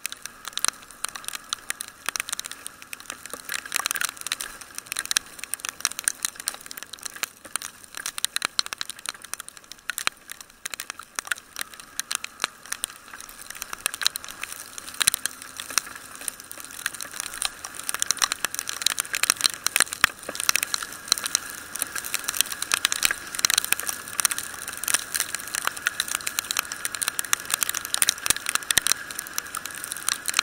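Raindrops striking the housing of a motorcycle-mounted camera while riding in rain: a dense, irregular crackle of sharp clicks, a little louder in the second half.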